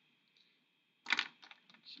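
A sharp click about a second in, followed by a few lighter ticks: a pen being picked up and handled on the desk and paper.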